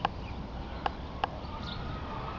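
Outdoor ambience: a steady low rumble with three short, sharp ticks, one at the start and two close together about a second in, and faint high chirps in the background.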